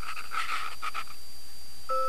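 Kipper the cartoon dog panting, a run of quick short breaths lasting about a second. Near the end, bell-like mallet-percussion notes begin.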